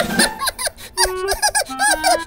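High-pitched cartoon character voices chattering in quick, rising-and-falling chirps, with a few short steady tones underneath.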